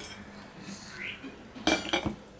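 Stainless steel dishes clinking: a small steel serving plate knocks against the steel rice plate or table once near the end, a loud clatter with a brief metallic ring, after a few faint handling sounds.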